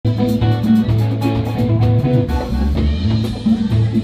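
Live champeta band playing: interlocking electric guitar lines with congas and drum kit over a bass line, driving a quick, steady beat.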